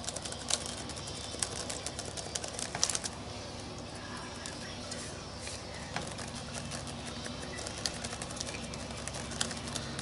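Sponge dabbing white acrylic paint through a stencil onto a paper journal page: soft, irregular taps, busiest in the first three seconds and again around six seconds in, over a faint steady hum.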